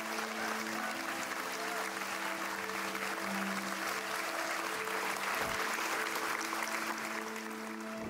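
Theatre audience applauding steadily, over background music of long, slowly changing held notes.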